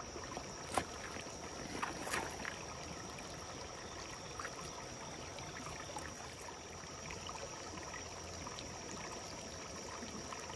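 Shallow creek water running over rocks in a steady trickle, with a couple of short sharp sounds in the first two seconds.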